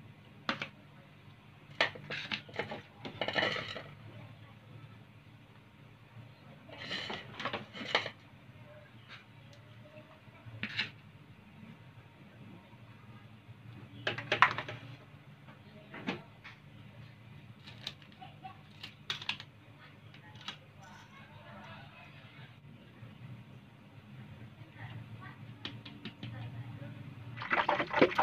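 Bowls and plates being picked up and set down on a kitchen counter: scattered short knocks and clinks, a dozen or so, over a low steady hum.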